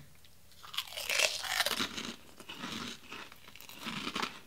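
Crunching and chewing of fried pork rinds being bitten and eaten. The crunching starts about a second in, is loudest over the next two seconds, then fades to softer chewing.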